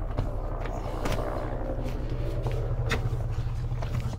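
Steady low mechanical hum, like a motor or engine running, with a few faint taps about a second in and near the end.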